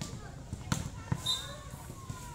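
A volleyball being hit: two sharp smacks less than half a second apart, over the voices of players and onlookers.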